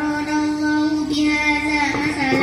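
A young girl reciting the Quran from memory into a microphone, chanting in a melodic voice that holds long, steady notes.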